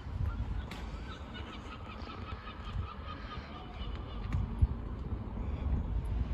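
A bird calling in a quick run of short repeated notes for a couple of seconds, over a low rumble, with a single bump about four and a half seconds in.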